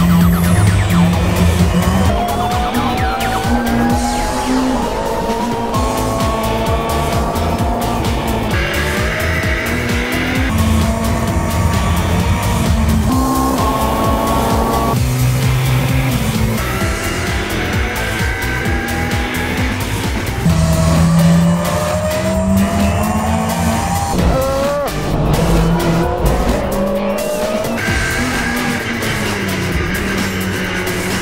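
Onboard sound of a Chevrolet Cruze TC1 touring car's turbocharged 1.6-litre four-cylinder engine pulling hard through the gears, its pitch climbing and then dropping at each upshift, several times over. Background music runs underneath.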